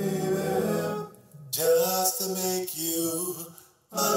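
Multitrack vocal recording played back: a male lead voice with layered male harmony background vocals, singing held notes in two phrases with a short break a little over a second in.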